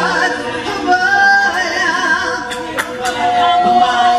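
A small gospel vocal group of women and a man singing a spiritual unaccompanied in close harmony, with long held notes. Two brief sharp clicks sound between two and a half and three seconds in.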